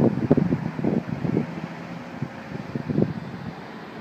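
Wind buffeting an iPhone's microphone in irregular low gusts, strongest in the first second and a half and again about three seconds in, over a steady low hum.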